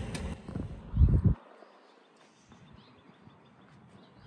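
Wind buffeting and handling noise on a hand-held phone microphone outdoors, swelling about a second in, then cutting off abruptly to a faint background hiss.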